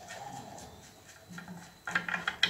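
Faint metal handling as the threaded bottom end of a stainless-steel transfer-pump piston rod is unscrewed by hand, with a quick run of light metal clicks near the end as the part comes free.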